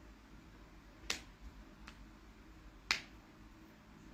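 Two sharp clicks, about a second in and about three seconds in, with a fainter click between them, over faint room noise.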